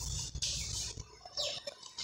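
Chalk writing on a blackboard: two short scraping strokes, the first about half a second in and the second just past the middle.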